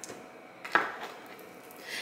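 Tarot cards being handled: one sharp card snap a little under a second in, with faint handling noise from the deck around it.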